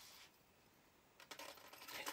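Faint clinking of small metal jewelry pieces being handled, then a short lull and light clicks and rustling near the end.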